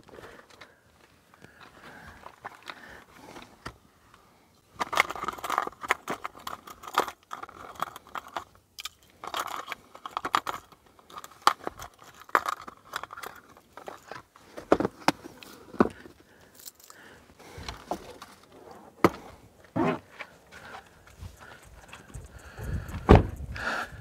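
Fishing gear being handled and sorted: a run of small clicks, rattles and rustling that starts about five seconds in and carries on in irregular bursts.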